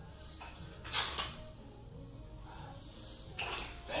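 A barbell being pulled through sumo deadlift reps, with two short noisy bursts of clatter and effort, about a second in and near the end, over a low steady background.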